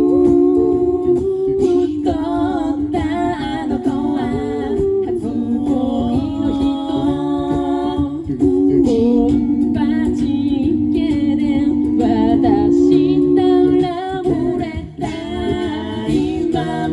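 Five-voice a cappella group singing in harmony through stage microphones and PA speakers: held chords under a moving lead line, with no instruments.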